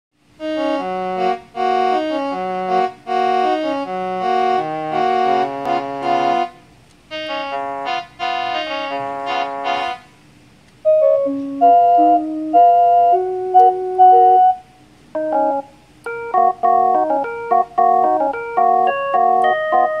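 Electronic keyboard playing a melody on a preset trumpet voice, bright and buzzy, in phrases with short breaks. About ten seconds in, after a brief pause, the melody goes on with a preset violin voice, smoother and plainer in tone.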